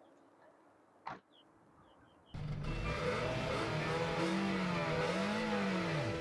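A car door shuts about a second in. Just after two seconds a car engine comes in suddenly and runs loud, revving up and back down twice.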